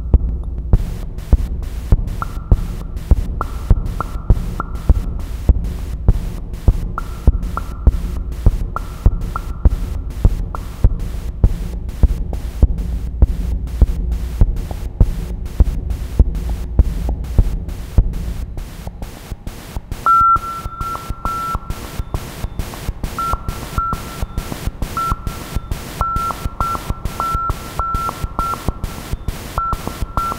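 Electronic percussion from an Emona TIMS modular trainer patched as a drum machine: a steady pulse of clicks and low thumps, with a short high-pitched tone switching on and off in a rhythmic pattern. About two-thirds of the way in, the low thump drops away and a brighter repeated tone takes over the pattern.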